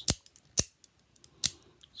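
Mini out-the-front automatic keychain knife being cycled by its thumb slide: three sharp snaps, spaced about half a second to a second apart, as the blade fires out and retracts.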